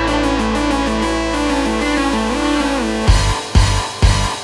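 Background music: guitar-led instrumental over a held bass note with a stepping melody, breaking about three seconds in into a heavy beat of roughly two hits a second.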